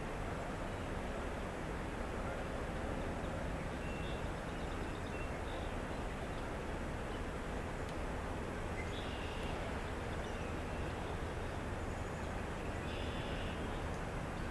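Steady outdoor background noise with a low rumble, and a few faint, short, high bird chirps about four, nine and thirteen seconds in.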